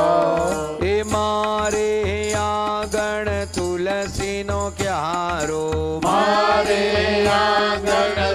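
Devotional Hindu mantra chanting sung over music, with long held notes above a steady drone and a regular beat.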